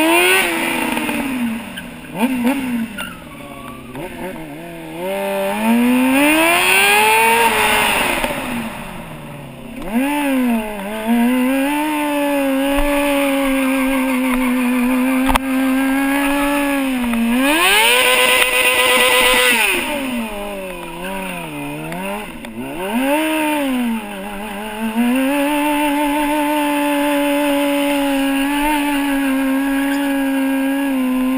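Sport motorcycle engine under stunt riding. The revs sweep up and down in the first ten seconds, then hold steady for several seconds at a time. About eighteen seconds in it is revved high with a rapid flutter at the top.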